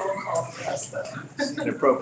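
Several people talking over one another, with bits of laughter.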